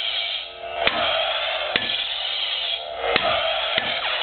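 Lightsaber sound effects from the original Master Replicas soundboard in a Luke Return of the Jedi saber: a steady electric hum broken by about four sharp clash sounds, each a different variant from the board.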